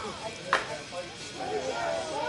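A single sharp knock about half a second in, then people calling out on a softball field.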